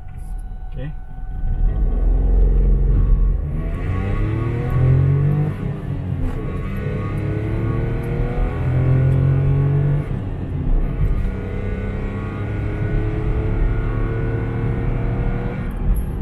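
Perodua Axia's 1.0-litre three-cylinder engine, fitted with a stainless steel exhaust extractor, heard from inside the cabin while accelerating hard. The revs climb, drop at a gear change about six seconds in, climb again, drop at another shift about ten seconds in, then climb more slowly.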